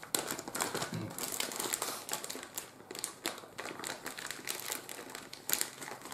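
Clear plastic packaging crinkling and rustling as it is handled and opened, with irregular crackles throughout and a sharper crackle about five and a half seconds in.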